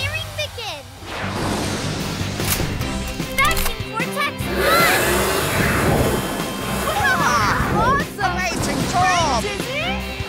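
Cartoon action soundtrack: background music with animated sound effects and short wordless vocal sounds from the characters.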